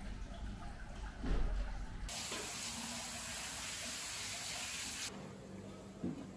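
Steady rush of water running into a bath, starting abruptly about two seconds in and cutting off about three seconds later. Before it there is a low rumble with a single thump about a second in.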